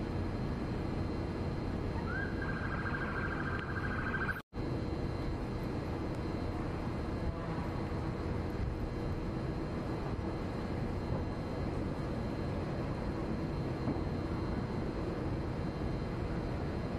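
Steady low outdoor rumble of idling engines and street noise. About two seconds in, one steady high-pitched beep lasts about two seconds. The sound drops out for an instant about four and a half seconds in.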